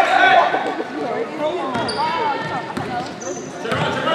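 Basketball being dribbled on a hardwood gym floor, bouncing at irregular intervals, amid the voices of players and spectators.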